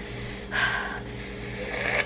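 A woman blowing breath out hard through pursed lips twice, a short huff about half a second in and a longer one that grows louder toward the end, against the burn of very spicy hot sauce on her lips.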